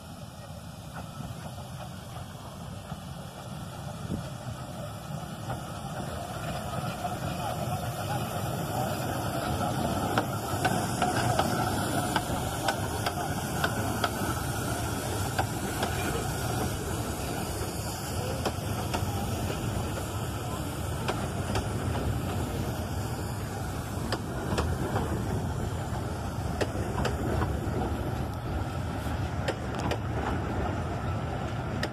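A narrow-gauge passenger train drawing into the station and its coaches rolling past: a steady rumble of wheels on rail with frequent rail-joint clicks, growing louder over the first several seconds and then holding steady.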